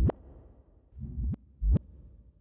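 Yamaha PSR-EW425 digital keyboard sounding a sound-effect-like voice: three short notes, each a quick upward pitch sweep rising from a low thud.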